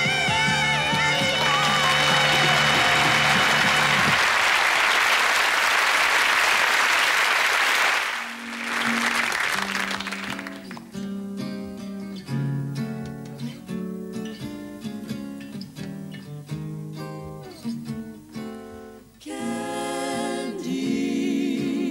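A song ends on a held sung note and band chord, and studio audience applause follows for several seconds. About eight seconds in, a solo archtop jazz guitar starts a gentle intro of plucked chords, and a close-harmony vocal group comes in near the end.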